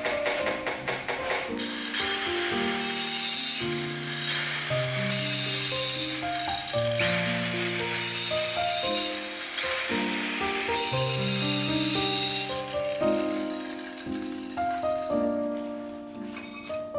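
Background music with held notes over a handheld electric tile cutter cutting tile in four bursts of a couple of seconds each. Each cut is a high whine that jumps up and then slides down in pitch, with a hiss of cutting.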